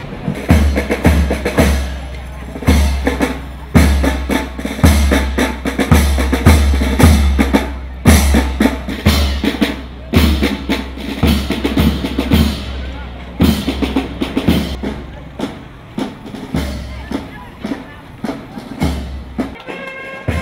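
Music dominated by loud drumming: repeated bass drum thumps with snare hits in an uneven beat.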